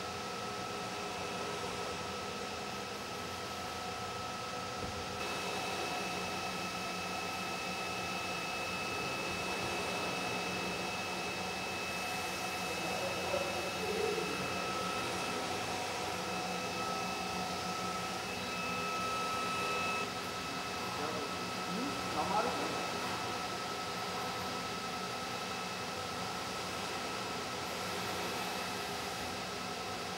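Steady workshop machinery hum with several constant high-pitched tones over it, plus a couple of brief faint sounds about midway and about two-thirds of the way through.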